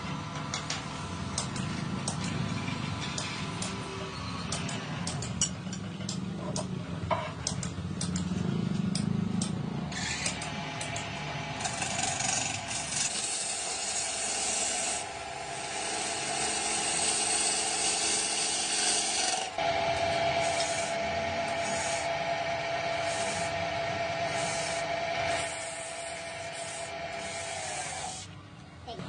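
Motor-driven wood lathe spinning a wooden hotpot shell while a hand-held turning tool cuts into it: a steady scraping of steel on wood with scattered clicks. About ten seconds in the cutting turns into a brighter, louder scraping hiss with a steady tone under it.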